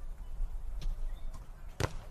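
A volleyball being struck by a hand during a rally, heard as one sharp slap near the end, with a couple of fainter knocks before it, over a low outdoor rumble.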